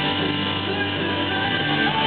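Christian rock worship band playing a song live, the music steady and loud.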